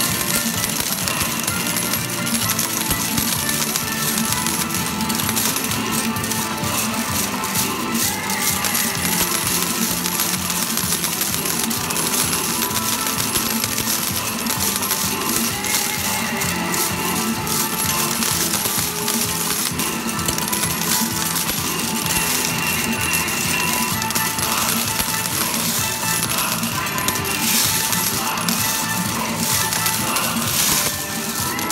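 Coin-pusher medal machine: metal medals clinking and clattering as they drop and are pushed, over steady electronic arcade music. The clinks come thickest about a quarter of the way in and again near the end.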